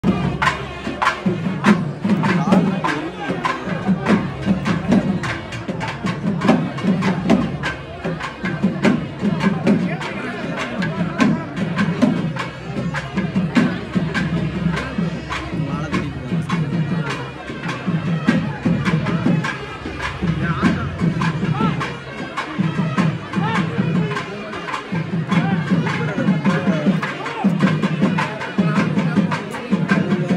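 Traditional temple-festival drums playing a fast, driving rhythm for a Kali attam dance, with a crowd talking and calling over it.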